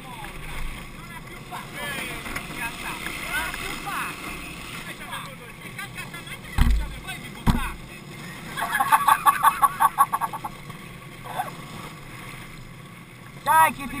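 Unpowered gravity kart rolling downhill, its wheels rushing on asphalt with wind over the helmet microphone. Two low thumps come a little past the middle, followed by a burst of laughter from the riders.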